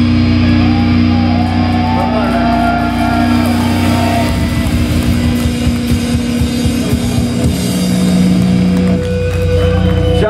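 Live metalcore band playing loud distorted electric guitars that hold long sustained chords, with a wavering higher line over them in the first few seconds and a chord change near the end.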